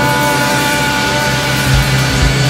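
Live rock band with electric guitars and bass holding one long sustained chord that rings out, then a few low drum thumps coming back in near the end.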